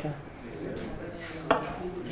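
A single sharp knock about one and a half seconds in, over a faint murmur of voices in the room.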